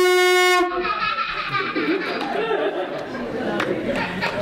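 A conch shell trumpet blown in one steady, loud blast that cuts off suddenly just under a second in, sounded as a Taíno-style call to the ancestors. Chatter from the people standing around follows.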